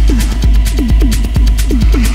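Techno in a DJ mix: a steady four-on-the-floor kick drum at a little over two beats a second, with short falling synth notes between the kicks, hi-hats ticking over the top and a deep, sustained bass underneath.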